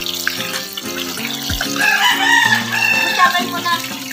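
Water from a garden hose pouring into a plastic pool, over background music. A long wavering high call rises over it from about two seconds in to past the three-second mark.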